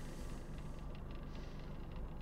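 Steady low rumble and hiss of background noise, with no distinct sounds standing out.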